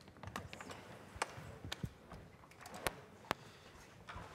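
A handful of sharp taps and knocks, about five, scattered over a low room murmur: performers moving about a stage and handling their instruments and gear.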